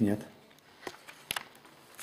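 A spoken word ends, then quiet room tone with two short faint clicks, about a second in and again a little later.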